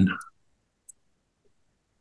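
Two faint computer mouse clicks while a dropdown menu of charts is opened on screen. The first comes just after the start and the second, smaller one about a second in.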